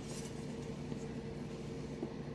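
Quiet kitchen room tone with a steady low hum, broken by a few faint clicks of handling on the countertop. At the very end comes a short knock as a metal bench scraper comes down through the dough onto the counter.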